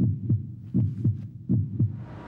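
Heartbeat sound effect: a low double thump, lub-dub, repeating about every three-quarters of a second, three beats in all.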